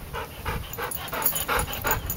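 Yellow Labrador retriever panting with her mouth open, quick rhythmic breaths at about three a second, a sign that she is winded from play.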